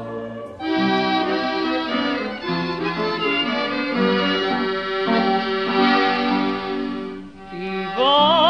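Accordion music in the style of Viennese Heuriger songs, played in full chords. It comes in about half a second in and dips briefly near the end.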